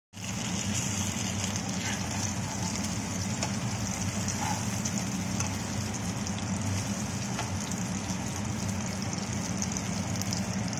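Seer fish (vanjaram) steaks coated in red chilli masala shallow-frying in hot oil in a nonstick pan: a steady sizzle, with a few faint sharp clicks. A steady low hum runs underneath.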